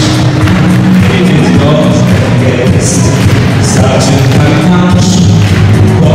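A group singing a pop song into microphones over loud amplified backing music with a steady heavy bass line.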